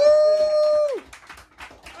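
A drawn-out 'woo!' whoop from one voice, held on one pitch and dropping away about a second in, followed by faint bar murmur.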